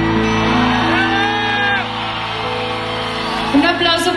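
Live pop band holding sustained keyboard chords, with a voice calling out over the music about a second in and again near the end.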